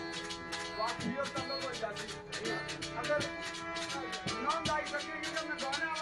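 Live Pothwari folk song: a man sings into a microphone over a steady harmonium drone, with a fast, dense rattling percussion keeping the beat.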